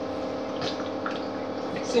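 Simple syrup poured from a plastic bottle into a blender jar of mango pieces: a soft trickle with a few light drips, over a steady background hum.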